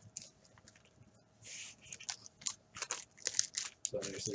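The wrapper of a trading-card pack crinkling and crackling as it is handled: a brief rustle about one and a half seconds in, then a run of short, light crackles and clicks.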